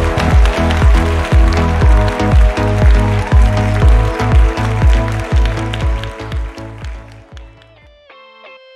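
Background music with a steady, pounding beat that fades out over the last two seconds.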